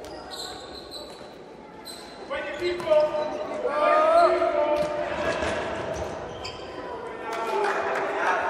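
Futsal ball being struck and bouncing on a hard indoor court, sharp knocks echoing in a large sports hall, with players shouting during play.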